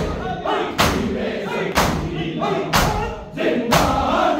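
A group of bare-chested men beating their chests with their hands in unison (matam): a loud, sharp slap about once a second, five in all, with male voices chanting a noha between the beats.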